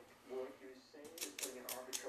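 Four or five quick, sharp clicks in the second half, from small tools being handled on the workbench as the pick is put down and the soldering iron is brought in. A radio talk show plays underneath.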